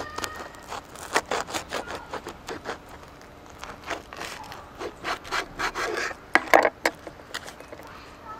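Knife sawing back and forth through a crusty Asiago bagel sandwich on a wooden cutting board: a run of short rasping, crunching strokes, with a few louder strokes a little before the end.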